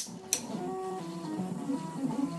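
Stepper motors of a home-built 3D printer singing in short tones that jump up and down in pitch as the print head and bed make quick moves while extruding cookie dough. Two sharp clicks come at the very start and about a third of a second in.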